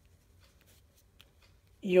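A pen writing on paper: faint, short scratching strokes.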